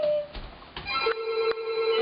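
A single steady, unwavering tone starting about a second in and held level, with a voice trailing off just before it.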